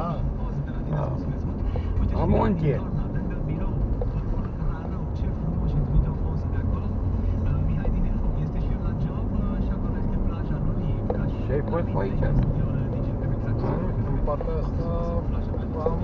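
Steady low rumble of engine and tyre noise heard inside a moving car's cabin, with brief stretches of talking.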